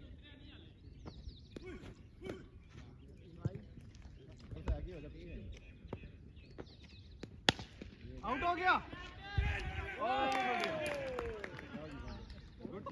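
A single sharp crack of a cricket bat striking a tape-wrapped tennis ball, then players' excited shouts, with one long falling call near the end.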